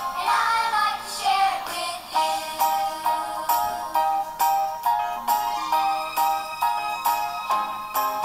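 A children's good morning song playing: singing over a musical accompaniment with a steady beat.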